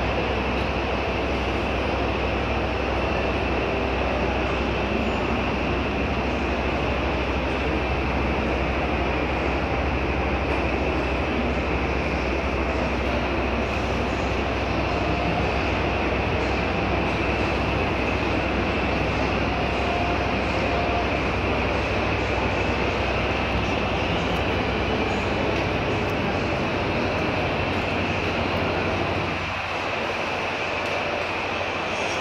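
Steady background noise of a large exhibition hall: a constant low hum under an even hiss, with no distinct voices or machine strokes. The low hum drops away just before the end.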